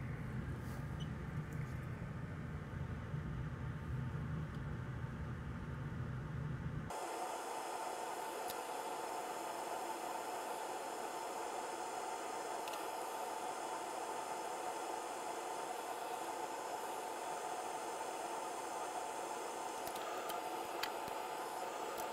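Steady background hiss with no distinct events. About seven seconds in it changes abruptly: the low hum drops away and a higher hiss takes over, as at an edit, with a few faint ticks after.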